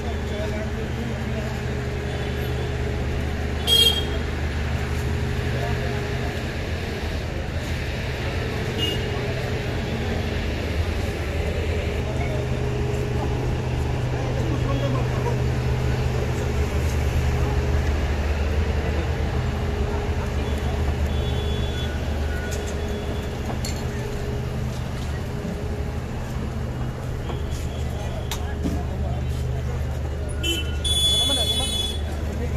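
Busy street ambience: people talking and chattering over a steady low hum of engines and traffic, with a sharp click about four seconds in.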